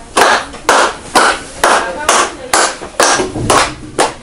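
Hands clapping in a steady rhythm, about two claps a second, each ringing briefly in a small room.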